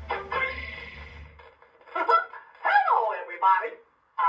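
Mickey Mouse Clubhouse Story Teller toy's speaker playing a music tune that stops about a second and a half in, followed by a character voice speaking in short phrases.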